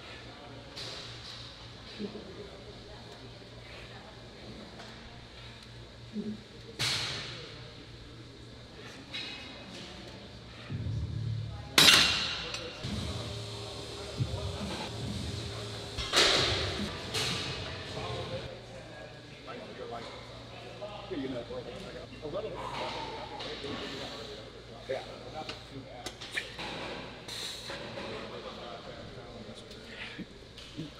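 Gym room sound: a steady low hum and background voices, broken by scattered sharp knocks and clinks of equipment. The loudest knock comes about twelve seconds in.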